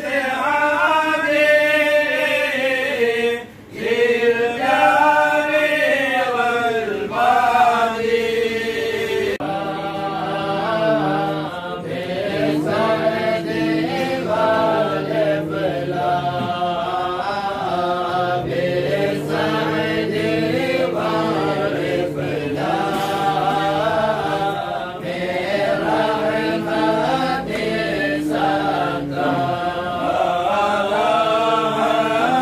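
A group of men chanting a devotional Mawlid recitation in unison from their books, a continuous melodic chant with one brief pause about three seconds in.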